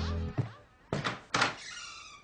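A background music cue ends, then three sharp knocks on a door, the last with a short ringing tail.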